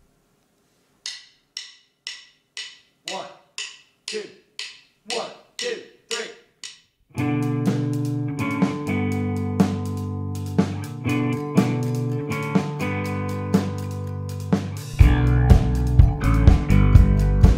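A count-in of sharp ticks, about two a second, with a voice counting "one, two", then a rock band comes in about seven seconds in: electric guitar and keyboard chords held over drums. Near the end the bass and drums come in heavier.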